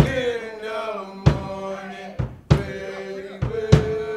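Church youth choir of young male voices singing, with sharp percussion hits several times.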